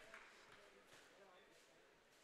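Near silence: faint room tone that fades out almost completely about halfway through.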